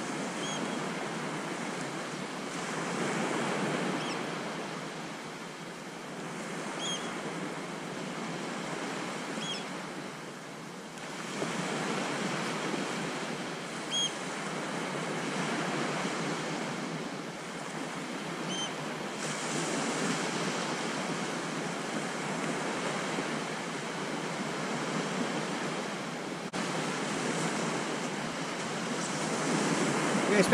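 Sea waves breaking and washing up a sandy beach, the surf swelling and easing every few seconds.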